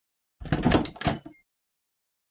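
A short clattering sound effect with a few quick knocks, like a door, lasting about a second.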